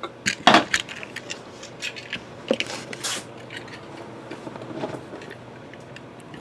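Sealed cardboard card boxes being handled and set down on a tabletop: a few light knocks and clicks, with a short rustle of rubbing a few seconds in.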